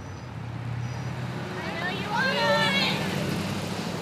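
A van driving past close by, its engine a steady low hum, with a voice calling out about two seconds in.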